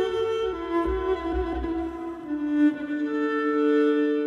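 Background music of bowed strings playing slow, long held notes, the pitch moving to new notes a couple of times.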